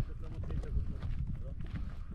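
Footsteps on hardened lava crust: an irregular run of short steps over a steady low rumble.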